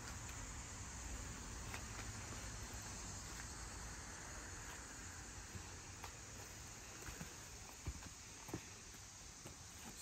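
Faint outdoor background with a steady high insect drone, broken by a few soft knocks and footsteps.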